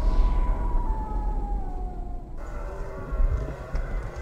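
Trailer-style sound effect under a title card: a heavy low rumble with a tone sliding slowly downward, cutting off abruptly about two and a half seconds in. A quieter film soundtrack with a low drone follows.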